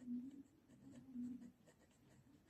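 Ballpoint pen writing capital letters on paper, faint scratching strokes.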